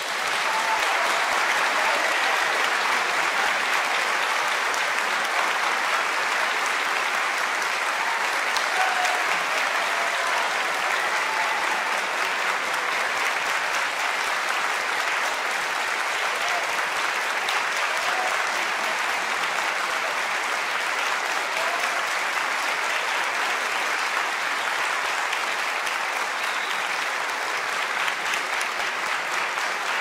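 Audience applause, breaking out the moment the music stops and holding steady, easing slightly near the end.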